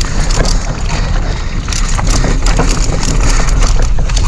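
Mountain bike descending a rocky dirt trail at speed: constant wind rumble on the action camera's microphone, with a steady stream of clicks, knocks and rattles from the bike over the roots and stones.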